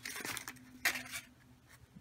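Vinyl stencil being peeled and handled on a painted wooden board: two short rustles, the stronger one about a second in, with a faint low hum between them.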